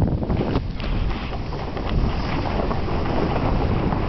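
Wind rushing over a moving microphone while riding down a snow slope, a steady rumbling blast mixed with the scrape of a snowboard sliding on snow, with a few sharper scrapes in the first second.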